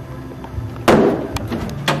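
A single sharp impact, echoing off the walls of a cinder-block hallway, about a second in, followed by a few lighter knocks.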